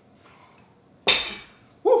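Loaded EZ curl bar set down on the floor about a second in: a single sharp metal clank with a short ring. A loud 'woo' follows near the end.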